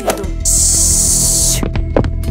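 Background music with a loud hiss lasting about a second that starts and stops abruptly, followed by a few sharp clicks: commotion noise that the caller on the line hears and asks about.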